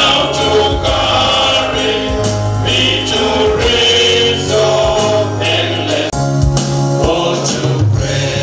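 Men's choir singing a hymn together, some voices amplified through handheld microphones, with long held notes and a brief break between phrases about six seconds in.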